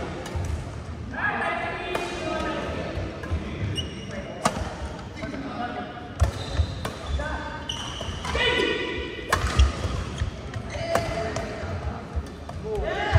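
Badminton rally: sharp racket strikes on the shuttlecock every second or two, with thuds of footfalls on the court floor. Players' voices call out in between, loudest twice.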